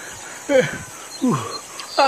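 A man's pained groans: two short moans, each sliding down in pitch, about half a second and about a second and a quarter in.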